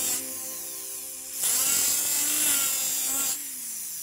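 Rotary handpiece with an abrasive sanding drum grinding the edge of a small sterling silver ring, in two bursts of high hissing sanding noise, the longer one starting about a second and a half in. Background music with sustained notes runs underneath.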